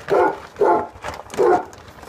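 A dog barking loudly three times, the barks about half a second and then nearly a second apart.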